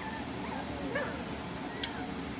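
Four-week-old standard schnauzer puppies whimpering and squeaking in short, arching little calls, several in a row. A single sharp click comes near the end.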